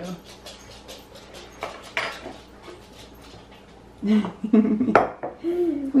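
A small spoon clinking against a porcelain teacup as sugar is spooned in and stirred: a run of light, irregular clinks. Voices and laughter come in about two-thirds of the way through.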